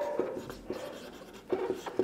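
Dry-erase marker writing on a whiteboard: several short, quiet scratching strokes as a word is written.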